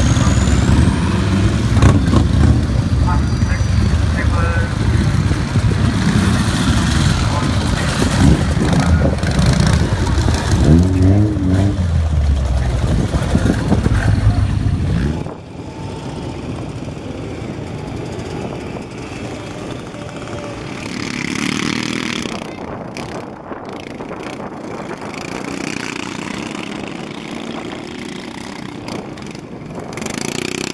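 Vintage motorcycle engines running as a parade of old motorcycles, including one with a sidecar, rides slowly past close by, mixed with voices. About fifteen seconds in the sound drops suddenly to quieter, more distant motorcycle engines running across an open field.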